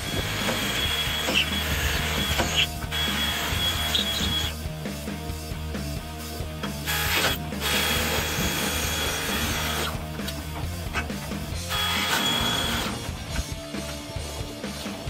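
Cordless drill boring a hole through a steel trailer-jack mount, the bit cutting in three runs of a few seconds each with short pauses between them.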